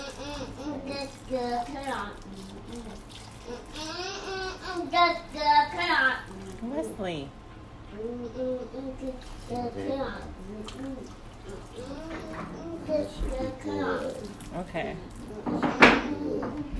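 Water pouring from a plastic watering can onto potting soil, with a child's voice over it.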